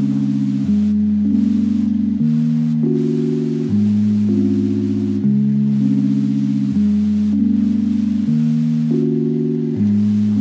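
Background music: slow, sustained organ-like chords that change about every one and a half seconds, with no beat.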